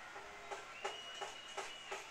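Faint outdoor field sound: a referee's whistle gives a thin, steady high tone for about a second, blowing the play dead. Short sharp claps or knocks come about three times a second.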